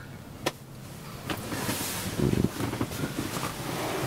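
Rustling and soft bumps of a person shifting about on upholstered bed cushions. There is a sharp click about half a second in.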